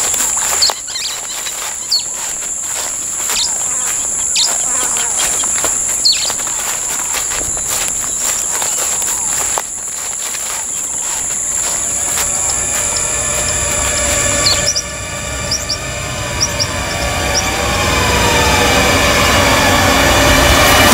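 Forest ambience with a steady high insect drone, occasional short bird chirps, and footsteps rustling through leafy undergrowth. Past the middle, dramatic background music builds in with gliding tones and a rising low rumble.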